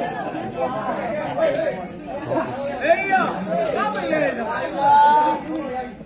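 Crowd of spectators chattering, with many voices overlapping. One voice calls out a longer, louder note about five seconds in.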